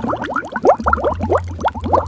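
Several people gulping down drinks together, a fast run of short rising glugs at about five or six a second.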